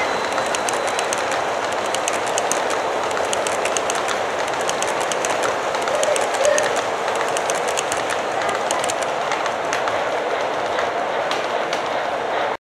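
O scale model passenger train rolling past on the layout's track: a steady rolling rumble of the cars' wheels, with a rapid run of small clicks as the wheels cross the rail joints.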